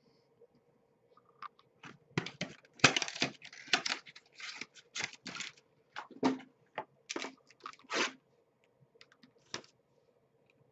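A hockey card box being unwrapped and handled: an irregular run of short crackling, tearing noises and small knocks, loudest about three seconds in, over a faint steady hum.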